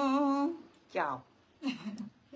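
A woman's voice holding the last long note of a Khmer Buddhist chant, which ends about half a second in. A short falling vocal sound and a brief laugh follow.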